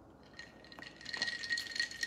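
Ice cubes clinking against a glass tumbler as a drink is sipped and the glass tipped and lowered: a light rattle of small clicks that builds through the second half, with a faint steady high tone underneath.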